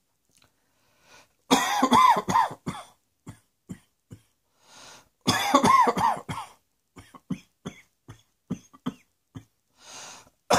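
A person coughing: two loud fits of several rapid coughs each, about a second and a half in and about five seconds in, followed by a string of short, quieter coughs.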